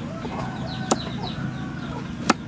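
A single sharp knife chop through a raw carrot onto a wooden chopping block about a second in, over short bird calls in the background.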